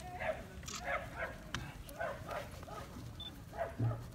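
Golden retriever making short, soft vocal sounds, a few a second with gaps in between, up close to a sheep.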